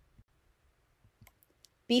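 Near silence with a few faint, brief clicks, then a voice starts speaking just before the end.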